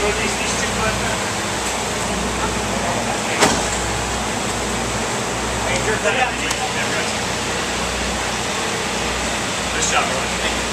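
Steady low rumble and hiss of machinery or distant engines, with indistinct voices in the background and one sharp click about three and a half seconds in.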